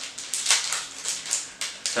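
Small plastic packet crinkling and crackling in the hands as guitar plectrums are handled, a quick irregular run of short rustles.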